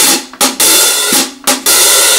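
Hi-hat struck with a drumstick in a swing pattern: three bright open-hat washes, each about half a second long and cut off sharply as the hats close, with two short closed strokes between them.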